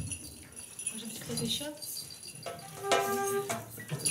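Soft jingling and rattling of small hand percussion as a band readies a song, with a short held instrument note about three seconds in and faint voices underneath.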